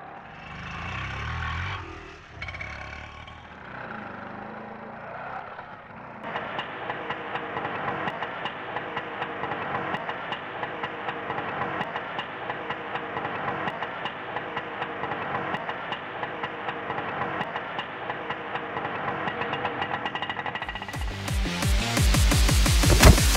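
Auto-rickshaw engine idling with a steady, rapid putter. Loud electronic music with a heavy beat cuts in about a second before the end.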